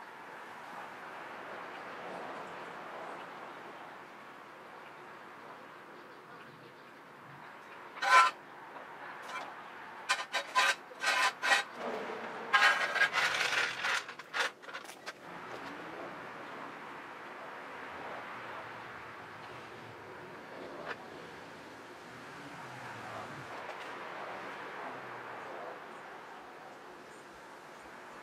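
Hydraulic floor jack being worked: a sharp metallic clank about eight seconds in, then a run of quick squeaking, rasping strokes from about ten to fifteen seconds in as the jack handle is pumped to lift the car.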